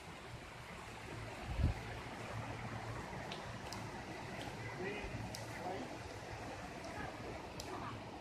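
Steady, faint rush of a shallow woodland creek running over rocks, with a single low thump about a second and a half in and a few light ticks.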